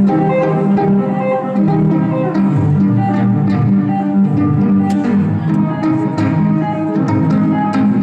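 Solo violin live-looped into a layered bed of repeating bowed and plucked violin phrases, many sustained notes sounding at once with sharp plucked attacks throughout.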